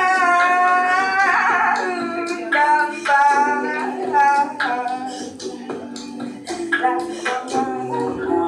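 A woman singing an improvised melody over a live-looped accompaniment of sustained low vocal or keyboard tones and a repeating percussive beat.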